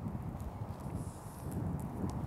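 Low wind rumble on the microphone, with faint rustling and a few soft clicks from clothing as a hood's drawstrings are pulled tight.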